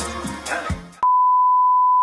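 Background music fading down over the first second, then a loud, steady electronic beep at a single pitch for about a second, cut off abruptly.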